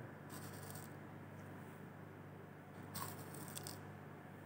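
Spatula scraping and scooping resorcinol powder in a plastic jar, two short faint bouts of scratching, one at the start and one about three seconds in.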